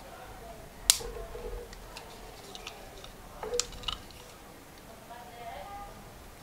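Knife tip prying apart the plastic shell of a wireless-earbud charging case: a sharp plastic click about a second in, then a few smaller clicks and scrapes about three and a half seconds in.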